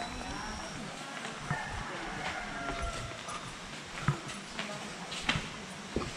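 Faint voices of people around an outdoor hot-spring pool over a steady low background, with a few sharp footstep knocks near the end as the camera carrier walks along the poolside.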